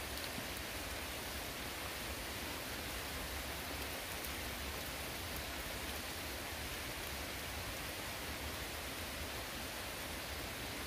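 Steady rain falling, an even hiss that does not change.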